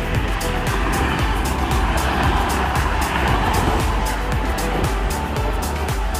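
Motorway traffic rushing past below, swelling in the middle as vehicles go by, under background music with a steady beat.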